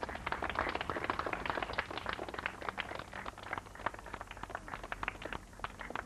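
A dense, irregular patter of sharp taps and clicks, several a second.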